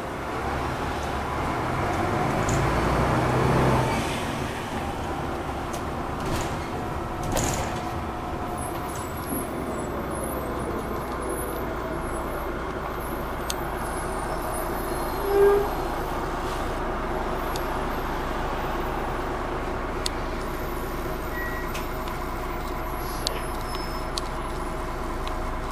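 Engine and road noise of a DAF DB250LF double-decker bus on the move, heard from inside the lower deck: a steady rumble that swells louder for a couple of seconds near the start. About fifteen seconds in a short single tone sounds over it.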